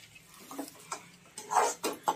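Metal spatula scraping and tapping against a kadai while stirring thick rava upma: a run of irregular scrapes and clicks, loudest a little past midway.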